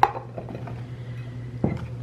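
Radishes tipped out of a bowl into a paper-towel-lined plastic container: a sharp clink as it starts, a few faint taps of the radishes landing, then a duller knock near the end.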